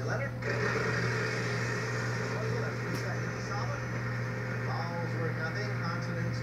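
Game-show audio from a wall-mounted television, heard across a small room over a steady low hum. About half a second in, a dense rushing noise rises and carries on under scattered speech.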